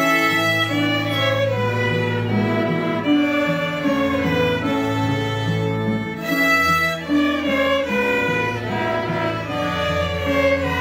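Student string orchestra, violins with cellos and basses, bowing a melody together over sustained low notes.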